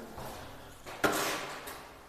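A short rustling swish about a second in, fading over about half a second: a hand brushing the protective plastic film taped over a window sill.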